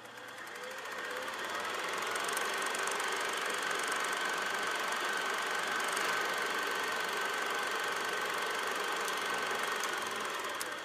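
A steady, rapid mechanical clatter with a faint whine and a low hum. It fades in over the first two seconds and then holds level.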